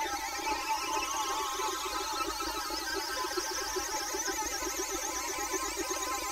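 Steady electronic sound with warbling tones over a fast, even pulsing.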